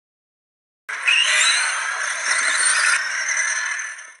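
A loud, noisy intro sound effect with a rattling, hissing texture, starting suddenly about a second in and dying away at the end.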